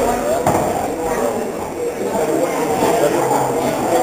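Murmur of voices in a bar room, with one sharp click about half a second in as the rolling cue ball strikes another pool ball.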